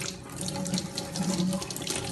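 Tap water running over a plastic soft-serve machine dispensing head and splashing into a stainless steel sink as the part is rinsed by hand, with small clicks and knocks of the part being handled.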